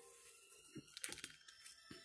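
Near silence broken by a few faint, short clicks and rustles of handling, clustered in the second half.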